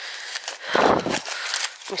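Rustling of clothing and handling noise on the camera microphone as a sandwich is pushed into a coat pocket. There is a heavier, deeper rub just before a second in.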